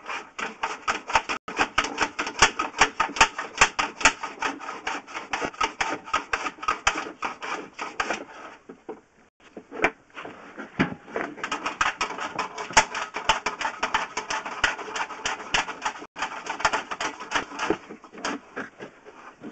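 Rapid rattling clicks as a sewer inspection camera and its push cable are fed along a sewer pipe, stopping briefly just past the middle before starting again.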